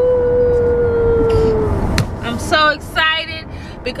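A woman's voice holding one long, loud note that sags slightly and fades about two seconds in, heard inside a moving car with a low road rumble underneath. A sharp click follows, then several short excited vocal sounds.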